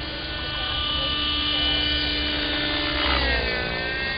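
Hirobo Sceadu radio-controlled helicopter flying, a steady high-pitched whine from its rotor drive. About three seconds in the pitch drops and then partly recovers.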